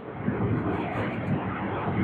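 Steady rushing background noise with no clear events, filling the pause between spoken phrases.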